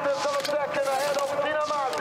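Speech from the race broadcast playing back, quieter than the on-camera talk, with a steady held tone under it.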